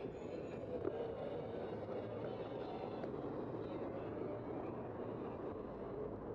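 Steady city street noise heard from a moving bicycle: passing and idling traffic with road and air rumble, an even wash of sound with no single event standing out.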